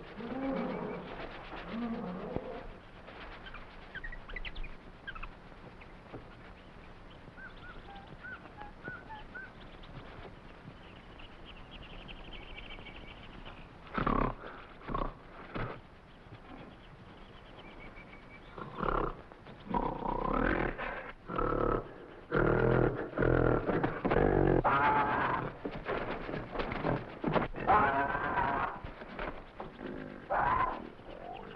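A gorilla roaring and growling, as an old film sound effect, in loud repeated bursts from about halfway through that come thick and fast near the end. Faint jungle bird chirps come before them.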